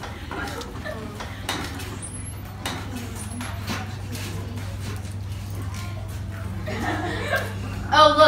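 Children chattering indistinctly and laughing, with scattered small clicks and a steady low hum underneath.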